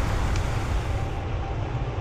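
Steady low rocket-engine rumble with a hiss over it, the highest part of the hiss dropping away a little past halfway.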